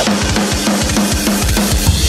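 Heavy metal song in a drum-led break: the kit plays fast, evenly spaced kick-drum hits with snare and cymbals, and the sustained guitars drop out.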